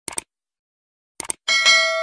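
Two quick double mouse-clicks, then a bright bell ding that rings on. This is the stock sound effect of a YouTube subscribe-and-notification-bell animation.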